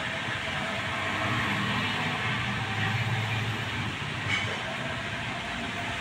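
Rain falling steadily on a panelled awning overhead: a constant hiss with a low rumble underneath that swells slightly near the middle.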